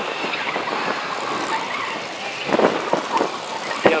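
A Mini being driven hard around the cones: its engine revving over a steady rushing noise of tyres and wind, with a few sharper noises about two and a half seconds in.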